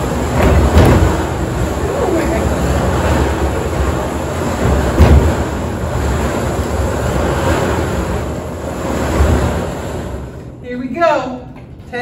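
Wooden sweepstakes drawing drum being turned, its tickets tumbling inside in a steady rumble, with a couple of louder knocks. The rumble stops about ten seconds in and a voice follows.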